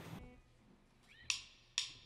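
Drummer's count-in: two sharp clicks of drumsticks struck together, about half a second apart, starting about a second and a quarter in after near silence.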